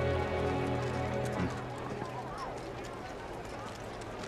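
Soundtrack music with low held notes that fades out about halfway through, under faint background voices and scattered light clicks and taps.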